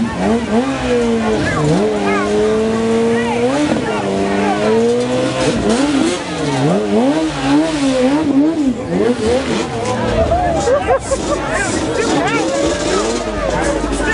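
Motorcycle engine held at high revs during a burnout, its pitch repeatedly dipping and climbing again as the throttle is worked, over crowd voices. About ten seconds in the sound turns rougher and noisier.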